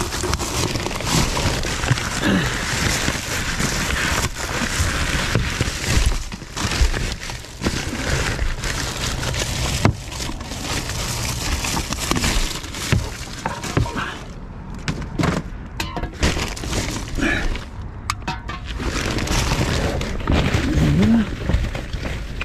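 Rustling and crinkling of plastic bags, cardboard and plastic bottles as gloved hands rummage through rubbish in a dumpster, with many small crackles and knocks.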